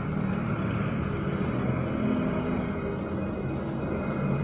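A steady low rumble with a faint hum, even in level throughout.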